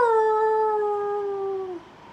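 A man imitating a wolf howl with his voice: the tail of one long held note that drops in pitch, slides slowly lower, and stops shortly before the end.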